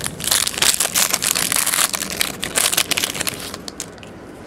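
Foil trading-card pack wrapper being torn open and crinkled by hand. It makes a loud, dense crackling for about three seconds, then eases off to a few light rustles.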